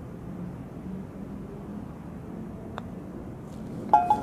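A golf putt: a faint click of the putter striking the ball, then about a second later a louder clunk with a brief ringing rattle as the ball drops into the cup, over a faint steady low hum.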